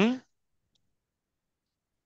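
The tail of a spoken word at the very start, then near silence for the rest: the call audio drops to nothing.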